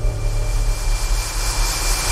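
Logo-intro sound effect: a rushing noise whoosh that swells and brightens over a deep bass drone, building toward the end before cutting off sharply.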